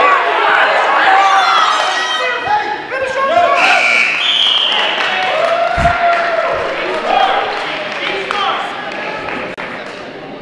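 Several people shouting over one another in a large gym, the calls of coaches and spectators urging on two wrestlers, tailing off near the end. About six seconds in there is a single dull thud on the mat.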